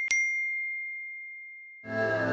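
A cartoon notification-bell sound effect: one bright ding just after the start, its single high tone ringing on and fading out. Music comes in near the end.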